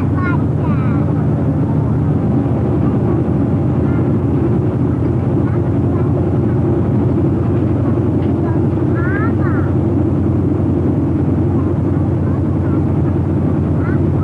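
Steady low drone of a boat's engine under way, with a rush of wind and water over it.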